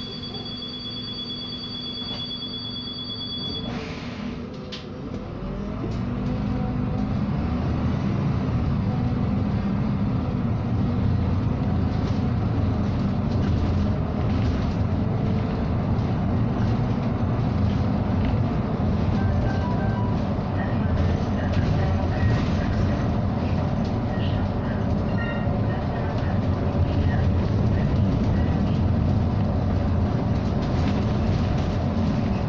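A steady two-tone beep for the first few seconds, then a SOR NB18 articulated city bus pulls away, its engine rising in pitch, and runs on with road and cabin noise, heard from inside the bus.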